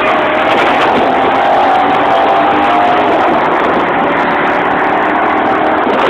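Car engine running loud and steady at speed, a sustained even engine note under a heavy wash of road and wind noise.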